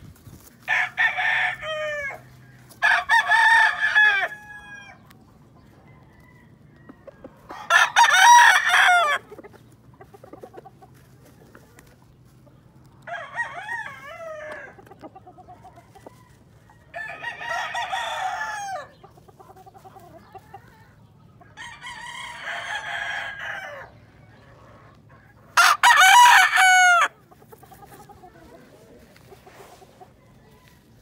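Gamecock roosters crowing in turn, about seven crows in all, each lasting a second or two with pauses between. Some crows are loud and close, others fainter, from several birds.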